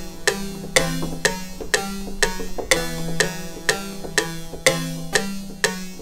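A plucked-sounding software instrument in FL Studio, played from a MIDI keyboard, repeating a pattern of single notes about two a second over low held notes: an arpeggiated E chord being tried out for a beat.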